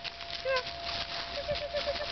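A dog gives one short, high whining yelp, then a quick run of five faint whimpers about a second later.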